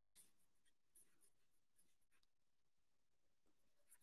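Near silence, with faint scratching strokes of chalk on a blackboard as a word is written.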